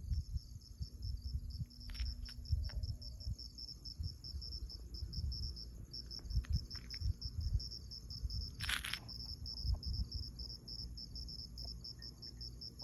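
Crickets chirping in a steady, rapid, even pulse, high-pitched, with a low rumble underneath. A brief hiss comes about three-quarters of the way through.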